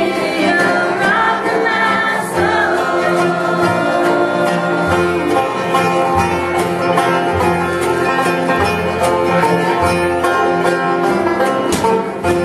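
Live acoustic bluegrass gospel band playing: banjo rolls over mandolins, acoustic guitar and an upright bass plucking steady low notes, with a voice singing in the first few seconds.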